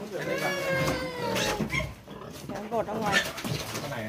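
A pig squeals once, one long call of about a second and a half whose pitch falls slowly, followed by shorter voices.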